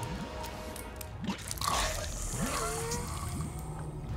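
Tense film score over wet squelching and gurgling, loudest about a second and a half in: a pen tube being forced into a bleeding throat.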